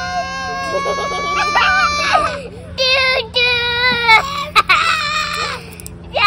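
Young children shrieking and squealing in high-pitched, drawn-out cries: one long held cry, then three shorter ones about a second apart.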